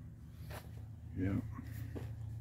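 A short swish about half a second in, over a steady low hum, with a man briefly saying "yeah" partway through.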